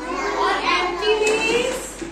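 A group of young children's voices talking and calling out over one another, high-pitched chatter.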